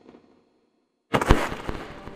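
A dramatic sound effect: a sudden, loud crash of crackling, rapid sharp strokes bursts in about a second in, after the dying tail of a sharp hit at the start.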